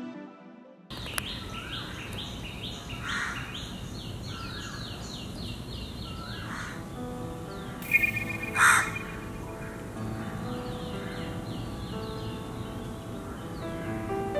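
Outdoor bird calls: a small bird repeating short falling chirps several times a second, with crows cawing, the loudest calls about eight to nine seconds in. Soft music fades out in the first second and comes back faintly near the end.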